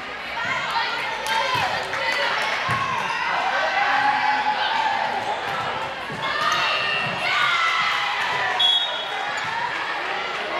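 Many girls' voices calling and chattering in a large gym, with a few short thuds of a volleyball bounced on the hardwood floor.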